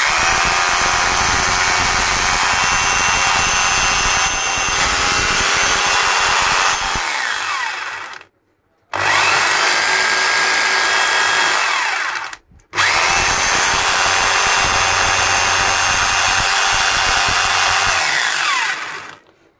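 Bosch GBH 220 rotary hammer running with no load on a test run after its switch was replaced, now working properly. It is switched on three times: each run holds a steady whine, then falls in pitch as it spins down and stops, the restarts coming about 9 and 13 seconds in.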